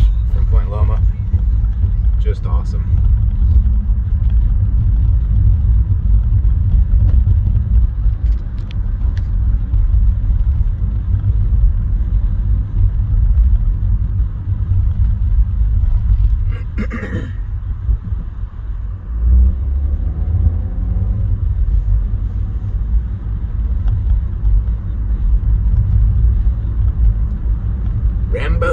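Steady low rumble of a car driving, heard from inside the cabin: engine and tyre-on-road noise. A short, louder low bump comes around 19 seconds in.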